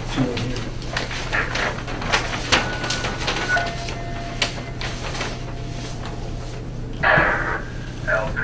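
Large paper survey maps being handled and shuffled on a table: scattered rustles and light knocks over a steady low hum, with a louder patch about seven seconds in.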